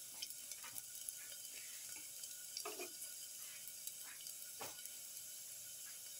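Garlic cloves sizzling faintly in hot oil in a stainless steel pan, with a few scrapes of a perforated metal spoon stirring them.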